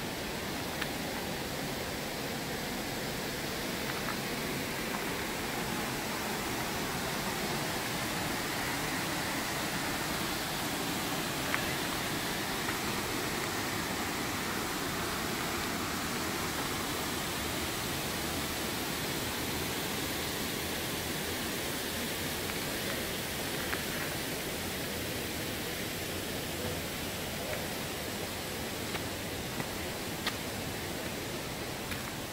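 Steady rush of water from Glen Ellis Falls and its stream, an even hiss with a few faint ticks scattered through it.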